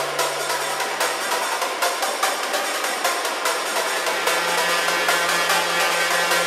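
Hard techno from a live DJ mix: a steady run of quick percussion hits over a dense synth layer. The bass line drops out about a second in, and a deeper bass tone comes in about four seconds in.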